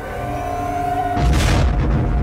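Orchestral film score holding a note. About a second in, a loud deep boom with a rushing noise comes in over it: a spaceship's hyperspace sound effect.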